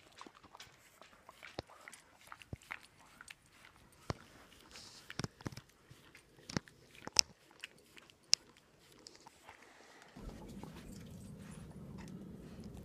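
A husky chewing close by: scattered, irregular clicks and crunches of its mouth working. About ten seconds in, a steady low rumble takes over.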